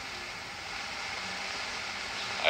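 Steady background hiss of an early-1930s optical film soundtrack.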